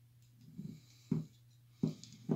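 A plastic spoon knocking twice against the inside of a glass jar while scooping out a syrup-soaked Luxardo cherry.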